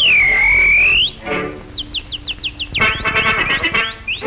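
Cartoon soundtrack music with whistle sound effects: a loud whistled glide swoops down and back up in the first second, a quick run of short rising chirps follows around the middle, and busy instrumental music fills the last second or so.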